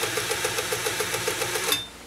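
Pfaff 130-6 sewing machine running at speed, stitching a zigzag seam with a rapid, even stitch rhythm, then stopping abruptly near the end.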